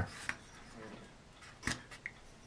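Small plastic model-kit parts being handled: a faint tap early, then one sharper click near the end.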